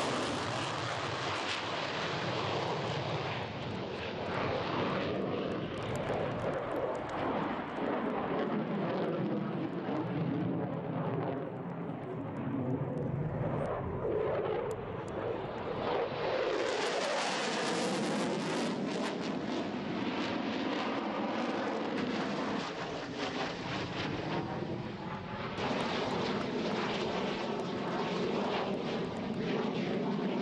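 Aircraft engine noise from airplanes flying display passes, with a sweeping, hollow tone that comes and goes as they pass. It thins out for a few seconds around the middle, then swells again.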